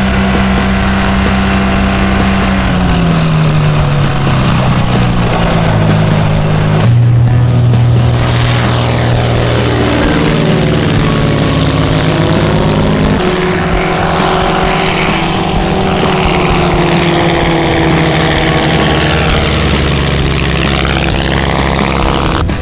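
Light-aircraft piston engines and propellers running steadily, with a plane passing low overhead about a third of the way in and again near the end, its sound sweeping as it goes by.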